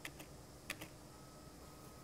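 A few faint clicks of computer keyboard keys being pressed, the loudest a little under a second in.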